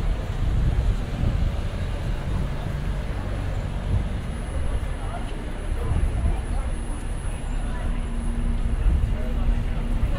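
Busy city street ambience: a steady rumble of passing traffic with passers-by talking. A low steady hum joins about six seconds in.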